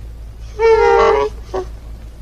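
A small hand-held pipe blown in short reedy notes: one wavering note held for most of a second, then a brief short note.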